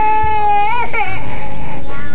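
A young child's voice holding one long high note, like a wail or a sung "aaah", which wavers and breaks off about a second in.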